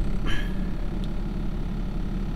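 Steady low hum of a pickup truck idling, heard from inside the closed cab.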